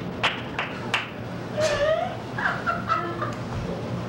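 Three sharp smacks in the first second, then a person imitating a fowl with a run of short, wavering squawking calls.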